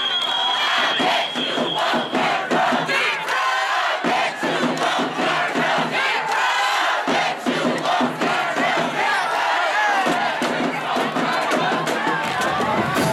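A crowd of band members and fans in the stands yelling and chanting together, with frequent short sharp hits mixed in.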